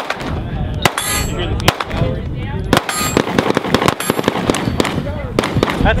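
Walther PPX 9mm pistol fired in slow succession, a shot roughly every second, each a full double-action-only trigger pull. Some shots leave a short ringing tail.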